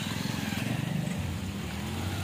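A motor vehicle's engine idling close by: a steady, low, rapidly pulsing hum.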